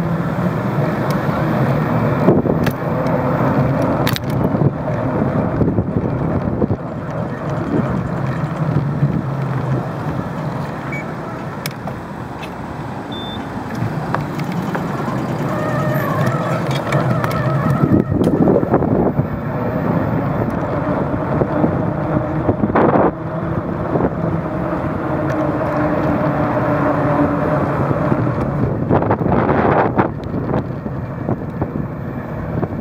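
Wind rushing over the microphone of a camera riding on a moving bicycle, with road and tyre noise underneath and a few sharp knocks along the way.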